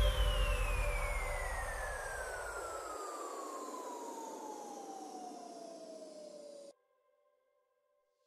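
Electronic dance track ending with a long falling synth sweep over music that thins and fades, the bass dropping out about three seconds in. Everything then cuts off suddenly, leaving near silence before the next track.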